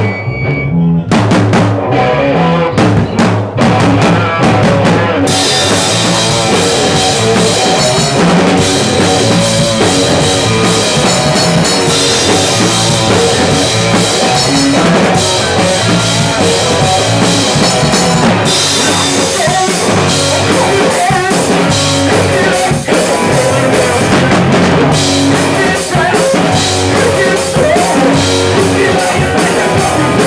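Live rock band playing: drum kit, electric bass and electric guitar. It opens with a few separate drum hits, then the full band comes in about five seconds in, with cymbals ringing steadily over a driving bass line.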